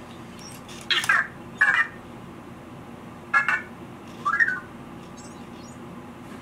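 Anki Vector robot making its electronic chirps: four short warbling beeps that bend up and down in pitch, bunched in the first half.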